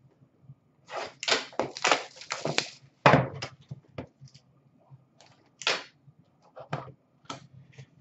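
Sealed hockey card box being slit with a box cutter and its plastic wrap torn away: a run of crinkles and scrapes from about one to three seconds in, a sharper rip just after three seconds, then scattered crinkles and small taps.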